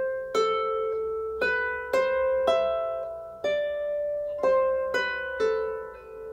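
Lever harp played slowly, single plucked notes of a medieval melody, about one to two a second, each note ringing on under the next.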